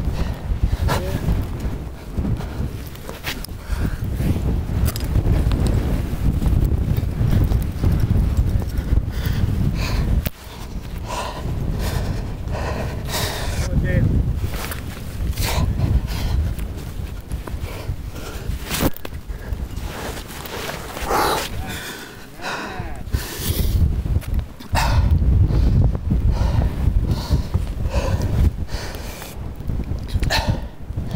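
Wind buffeting the microphone in gusts, a deep rumble that drops away briefly twice, with faint scattered voices and clicks.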